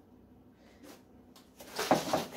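Quiet kitchen room tone with two faint knocks, then near the end a short, loud burst of handling noise as containers are moved about on the counter while measuring milk.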